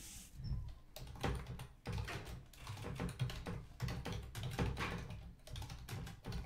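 Typing on a computer keyboard: a run of quick, irregular key clicks, several a second.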